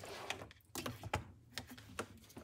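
A few light plastic clicks and knocks of USB cables and plugs being handled on a workbench.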